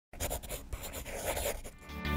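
Scratchy sound effect for a logo intro, like a pen scribbling, in irregular strokes.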